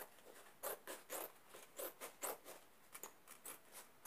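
Scissors snipping through paper in a run of short, faint cuts, about two or three a second.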